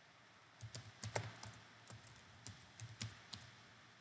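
Computer keyboard typing: a quick, irregular run of about a dozen light keystrokes as a short terminal command is typed and entered.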